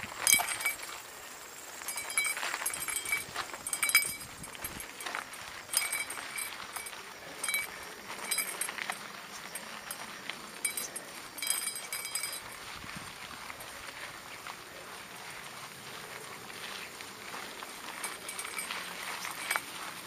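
Mountain bike jolting over a rough gravel trail: irregular metallic clinks and rattles from the chain and frame, thicker in the first half and sparser later.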